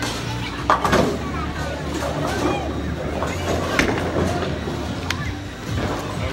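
Bowling alley sound: the low, steady rumble of bowling balls rolling on the lanes, with a clatter of pins being struck about a second in and a few lighter knocks later, over background chatter and music.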